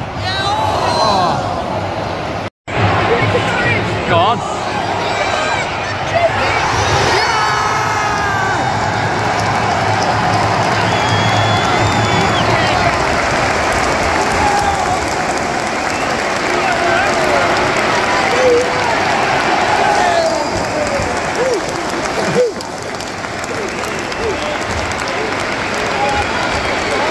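A large football stadium crowd cheering, clapping and singing loudly just after the home team scores a goal.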